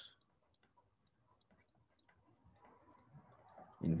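Faint, scattered ticks of a stylus tapping on a tablet while handwriting, with near silence between them.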